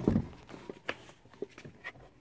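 Handling of a car door trim panel: a low thump at the start, then several light, sharp plastic clicks and knocks as the panel is moved.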